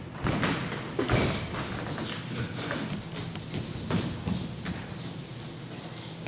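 A run of irregular thumps and taps, the loudest about a second in, with further knocks scattered through the rest.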